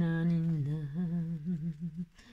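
A woman humming a tune: one long held note, then a wavering run of shorter notes.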